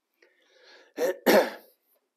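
A man clearing his throat: two short, rough bursts close together about a second in.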